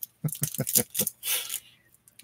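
Trading cards being handled and flipped through by hand: a quick run of light clicks and snaps in the first second, then a brief brushing rustle.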